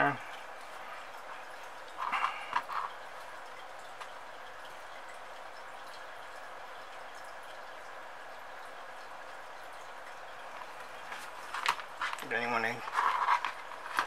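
A steady faint hiss, with a short cluster of small handling sounds about two seconds in and a few soft spoken words near the end.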